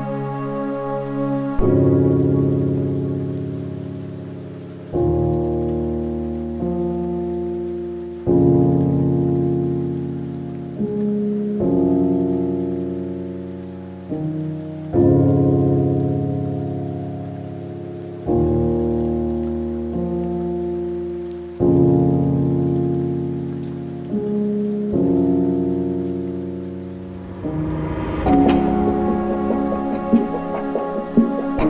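Slow lofi piano playing chords, a new chord struck about every three seconds and left to fade, over a steady patter of rain.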